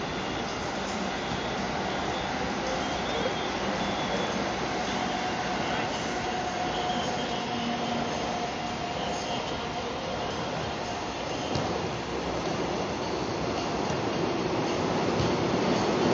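Steady rumble and hiss of city background noise at an open-sided rooftop futsal pitch, with a faint drawn-out tone in the middle and no clear ball kicks.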